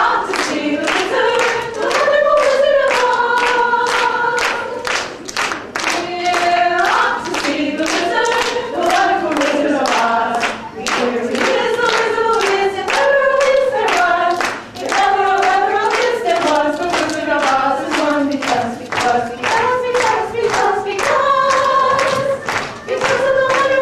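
A group of voices singing a song together, with steady clapping in time to the beat.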